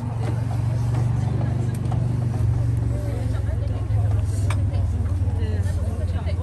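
A steady, low engine hum with a fine regular pulse, like a motor idling, under quiet murmuring voices.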